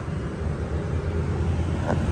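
Steady low rumble of a running vehicle.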